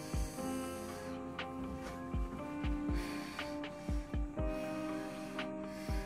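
Soft background music of sustained, slowly changing notes, with a few short, dull thumps scattered through it.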